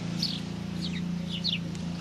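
Small birds chirping: short downward chirps, a few each second, over a steady low hum.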